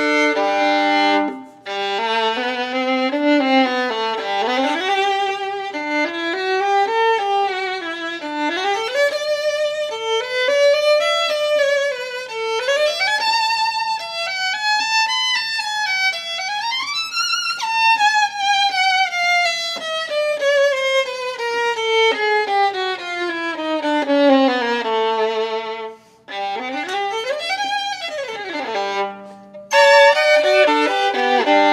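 Fiddlerman Soloist violin played solo with the bow: it opens with a short chord, then a melody with vibrato and many slides up and down the strings. About halfway through it sweeps up high and then glides slowly down over several seconds, with a brief break and another up-and-down slide near the end.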